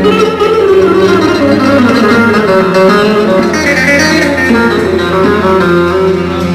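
Live band music played loud through a PA: a fast, running melody on a plucked string instrument over keyboard and drum kit.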